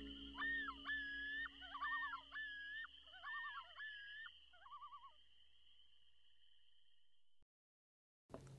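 Loon calls from a lake field recording, a series of rising, held notes broken by warbling, over a steady high chirring of crickets, as the last guitar notes of the music die away. It all cuts off suddenly near the end.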